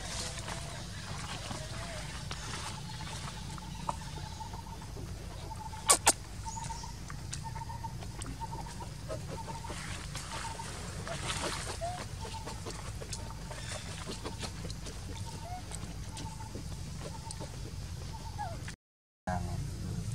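A bird calls one short note over and over at an even pace, over a steady low rumble. Two sharp clicks come about six seconds in.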